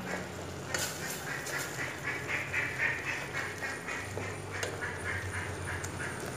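A wooden spoon stirs and scrapes tomatoes frying in a steel pot, with a raspy sizzle that comes and goes with the strokes and a few sharp knocks of the spoon against the pot.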